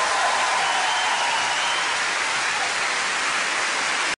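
Studio audience applauding, with a long whistle that fades out about halfway through.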